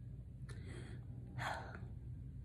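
A woman's breath between sentences: a faint breath about half a second in, then a louder short intake of breath around one and a half seconds in, over a steady low room hum.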